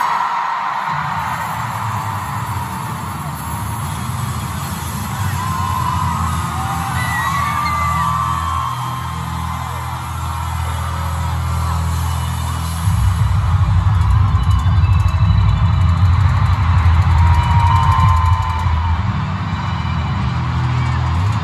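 Live pop band music with a heavy, steady bass beat, heard from within a stadium crowd, with fans' shrill whoops and screams over it. The bass gets louder a little past the middle.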